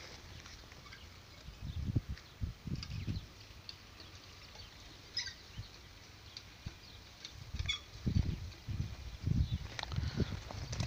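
Quiet open-air field ambience with a few faint, short chirps about midway, and several low, muffled thumps near the start and again toward the end.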